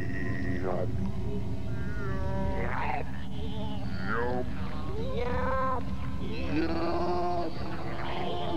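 Alien creature calls from a 1990s TV commercial soundtrack: about five whale-like, warbling calls that swoop up and down in pitch, over a steady low hum.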